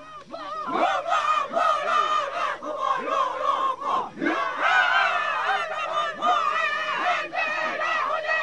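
A group of Kayapó (Kaiapó) people chanting and calling out together, many high voices overlapping and wavering in pitch, in an archival field recording.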